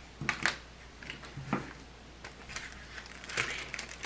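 Diamond painting canvas and its clear plastic protective film being handled and smoothed flat: a few short, scattered crinkles and rustles.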